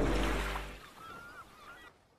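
Closing music fading out, its deep bass tail dying away within the first second. After that come faint gliding tones, which stop shortly before the end.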